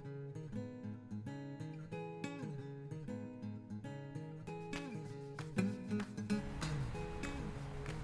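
Acoustic guitar music: picked notes in a steady pattern, with a few notes sliding in pitch. About six seconds in, a low rumbling noise comes in underneath.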